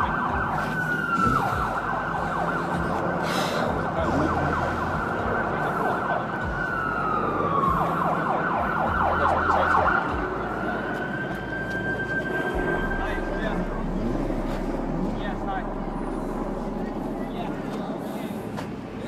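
Emergency vehicle siren holding a high note, twice dropping in pitch and cycling rapidly up and down, then rising again and holding before it fades out near the end, over a low steady rumble.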